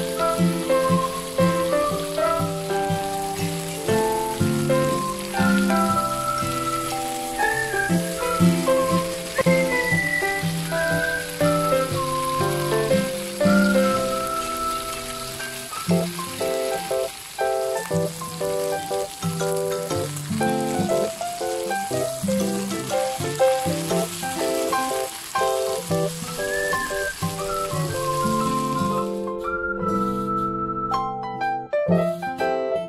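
Light piano music over the steady sizzle of stuffed squid grilling in oil in a frying pan; the sizzle cuts off just before the end while the music plays on.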